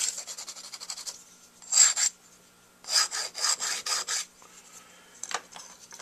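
Sandpaper stick rubbed in bursts of quick short strokes against the tip of a metal Dukoff D9 saxophone mouthpiece, a dry high rasp as the tip rail is shaped.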